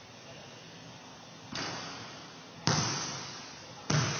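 A leather basketball landing after a shot: a softer first thud about one and a half seconds in, then two loud bounces on the hardwood gym floor, each ringing on with a long echo in the big hall.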